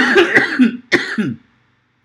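A man coughing twice into his hand, the coughs starting right at the start and about a second later, then stopping.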